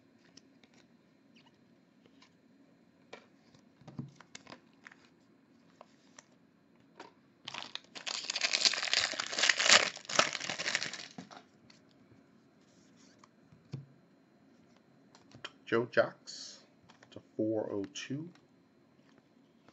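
Foil trading-card pack wrapper torn open and crinkled for about three seconds near the middle, the loudest sound, with faint clicks of cards being handled before and after.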